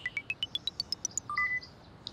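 Electronic scene-transition sting: a quick run of short blips climbing steadily in pitch at about eight notes a second, followed by two brief tones.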